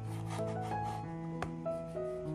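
A chef's knife slicing through a tomato on a bamboo cutting board, the blade rasping through the skin and flesh in short strokes, with a sharp tap about one and a half seconds in as it meets the board. Background music plays throughout.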